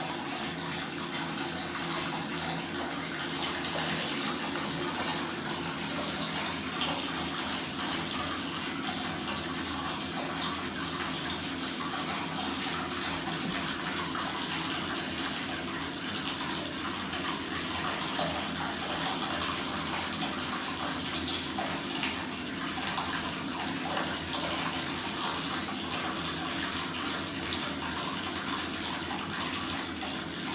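Water running steadily from a tap into a copper bathtub, an even rushing sound.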